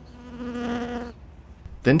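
A fly buzzing close past the microphone: a steady hum that swells and fades out about a second in.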